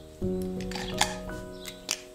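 Calm instrumental background music, with a new chord of held notes sounding just after the start and slowly fading. A few light clicks of fineliner pens knocking together in the hand come through, about a second in and near the end.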